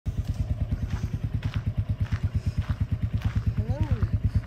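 Motorcycle engine idling with a steady, even chug of about eight beats a second.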